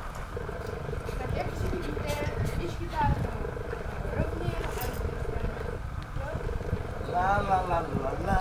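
Uneven low rumble of wind on the microphone, with faint children's voices in the background and a voice rising clearly about seven seconds in.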